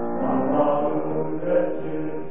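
A choir singing in harmony, holding sustained chords.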